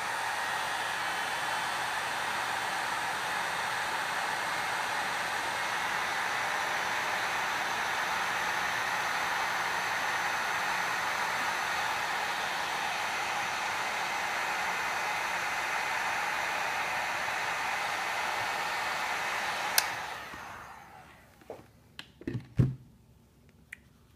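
Hot air gun blowing steadily while shrinking heat-shrink tubing over a freshly soldered N-type connector. About twenty seconds in there is a click and the blowing dies away over a second or so, followed by a few light knocks.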